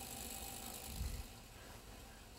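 Faint mechanical rattle of a molecular-motion demonstrator: small particles shaken about under a lid, with a low bump about a second in.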